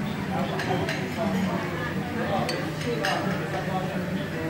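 Restaurant dining-room noise: a babble of voices with a few sharp clinks of dishes and cutlery over a steady low hum.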